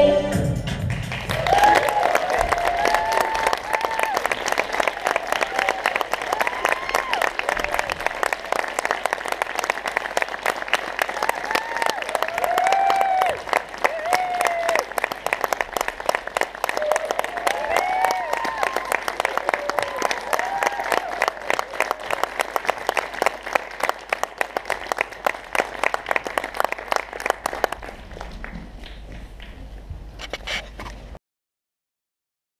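Audience applauding a curtain call, with shrill whoops and cheers breaking over the clapping now and then. The applause quietens about halfway through and thins out to scattered claps near the end.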